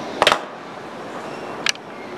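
Ruger LCP pocket pistol being set down on a wooden table: a short clatter of knocks a quarter of a second in, then a single sharp click near the end.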